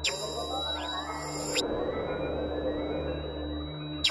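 Generative ambient drone music: low sustained drones under a steady high tone. A high, bright electronic burst opens with a click and cuts off suddenly about a second and a half in.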